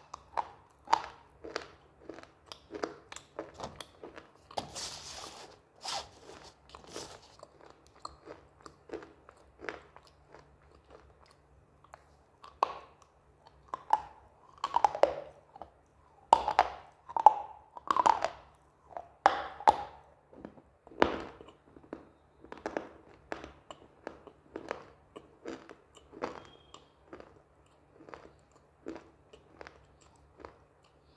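Close-up crunching and chewing of hard roasted slate pieces, with sharp crunches about once or twice a second and the loudest, densest bites between about 13 and 20 seconds in.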